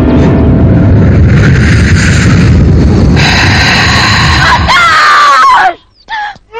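Loud dramatic film soundtrack: a dense rumble under a high cry that rises and falls near the end, then a sudden cut-off to near silence.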